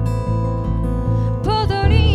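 Live band music: acoustic guitar and keys over a steady electric bass line. A woman's singing voice comes in about one and a half seconds in.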